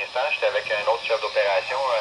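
A two-way radio voice transmission on a trunked system, heard through a handheld Pro-92 scanner's small speaker. The voice is thin and tinny, with no low end.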